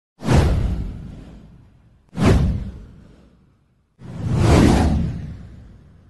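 Three whoosh sound effects about two seconds apart, each a sudden rush that fades away; the third swells in more gradually.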